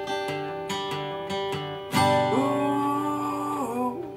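Acoustic guitar strummed about three times a second, then a man's voice comes in about halfway with one long held sung note that bends up and falls away near the end, over the ringing guitar.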